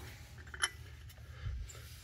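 A single light click about two-thirds of a second in, then faint handling noise: the cast cover plate of a steam direct return trap being picked up and turned in the hands.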